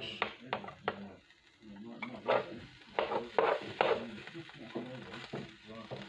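A utensil scraping and tapping at the hot plates of an electric omelette maker, prising out an omelette that has stuck and not come out in one piece. It comes as a run of short scrapes, several in quick succession in the middle of the stretch.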